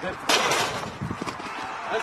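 Excited shouting of "Let's go!" in celebration of a leaping outfield catch that robs a home run. A loud rush of noise comes about a third of a second in and fades within a second.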